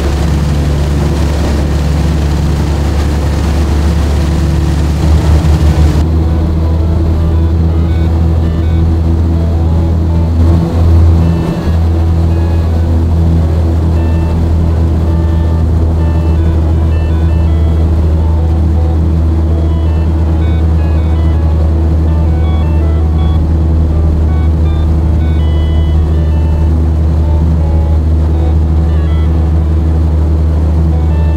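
Tohatsu 20 hp four-stroke two-cylinder outboard motor running steadily under way, swelling louder briefly twice in the first twelve seconds.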